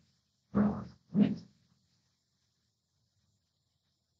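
Two brief, low murmured syllables from a person's voice in the first second and a half, then near silence with a faint hiss.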